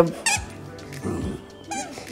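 Squeaky dog toy squeaking twice, short and wavering, as a small dog bites and tugs at it: once about a quarter second in and again near the end. Background music plays under it.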